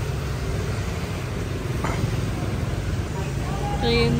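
City street traffic: a steady low rumble of passing motorbikes and cars.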